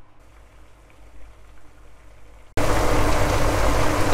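Red wine boiling hard around meatballs in a pan over high heat, boiling off its alcohol: a loud, even bubbling hiss that starts suddenly about two and a half seconds in. Before it there is only a faint low hum.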